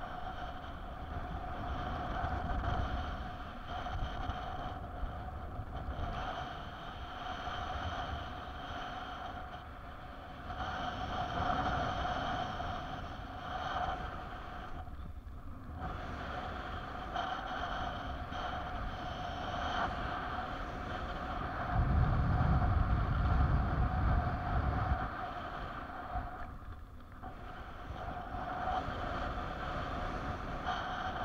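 Airflow rushing over the microphone of a paraglider pilot's camera in flight, with a steady thin whistle running through it. About 22 seconds in, a gust sets off heavy buffeting on the microphone for a few seconds, and the noise dips briefly twice.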